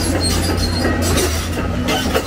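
Hyundai 290LC-9 crawler excavator running, its diesel engine a steady low rumble, with clanking and squealing from its steel tracks and undercarriage as it moves.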